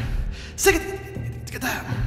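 Body percussion with vocal percussion: pitched, breathy gasp-like vocal sounds about once a second in a steady rhythm, with low thumps of hands striking the body between them.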